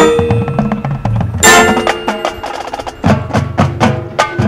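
Marching band percussion: a sharp accented hit followed by ringing bell-like tones, a second hit about a second and a half in, then a run of quick, even clicks from about three seconds in.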